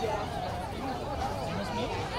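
Overlapping chatter of several voices from the band and audience between songs, with no music playing.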